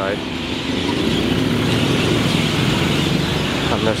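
City bus driving past close by: a low engine hum over steady road traffic noise that swells through the middle and eases near the end.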